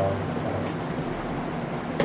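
Steady room noise, a low hum under an even hiss, with a voice trailing off at the very start.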